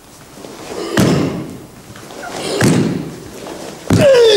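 Three sharp cracks from a karateka's fast kata techniques: the gi snapping and bare feet landing on a wooden floor. They come about a second and a half apart, about a second in, near the middle and just before the end, each ringing briefly in the hall.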